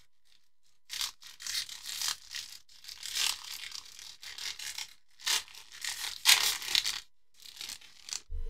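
Plastic trading-card pack wrapper crinkling and tearing open by hand, in two long stretches of loud rustling, about a second in and again about five seconds in, with a short crinkle near the end.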